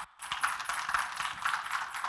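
Congregation applauding: a crowd clapping without a break, starting just before and continuing throughout.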